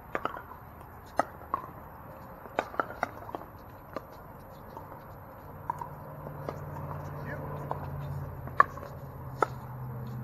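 Pickleball paddles striking plastic pickleballs: sharp, irregular pocks from this court and neighbouring courts over a murmur of distant voices, the sharpest hit near the end.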